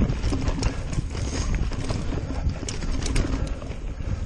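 Niner RIP 9 mountain bike rattling and clattering over rough trail at speed, with many quick sharp clicks over a steady low rumble of tyres and wind on the microphone.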